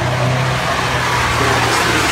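Banger-racing van engines running, a steady low drone over general track noise.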